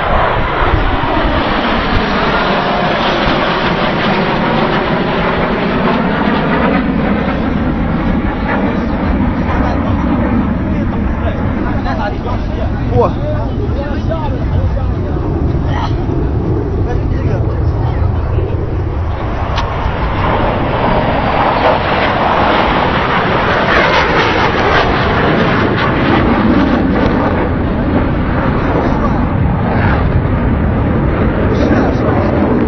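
Jet aircraft passing over, their steady noise carrying a sweeping, phasing tone that falls and rises twice, once in the first few seconds and again in the second half. Spectators talk underneath.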